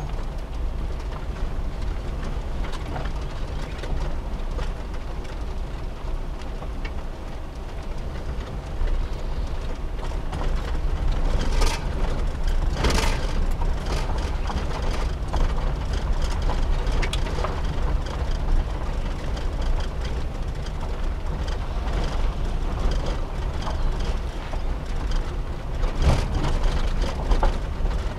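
Suzuki Every kei van's small three-cylinder engine and running gear rumbling steadily as it drives slowly along a dirt campground track. A few louder knocks come from bumps, around the middle and near the end.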